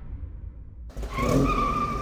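Vehicle sound effect: a low engine rumble, then about a second in a steady tyre squeal, as of a car skidding.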